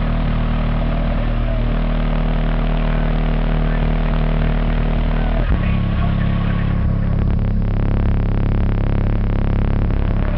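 Two MTX 9500 12-inch subwoofers in a car trunk playing loud, steady low bass tones. The tone changes to a different pitch about halfway through.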